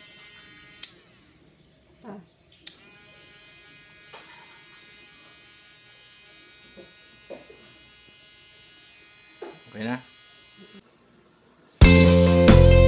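Portable 16000 rpm mini electric grinder, a small corded rotary tool fitted with a pink grinding stone, running with no load as a steady high motor whine. It is switched off a little over a second in, started again under three seconds in, and switched off about a second before the end.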